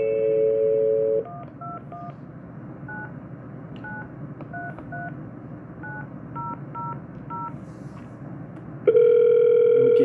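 Landline dial tone through a Panasonic cordless phone base's speakerphone, cut off after about a second as a number is dialled on the base keypad: about a dozen touch-tone (DTMF) beeps at uneven spacing. Near the end a loud steady ringback tone starts on the line as the call rings through.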